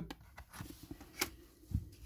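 Paper scratch cards being handled and moved: soft rustling with a few sharp clicks, the loudest about a second and a quarter in, and a low thump near the end.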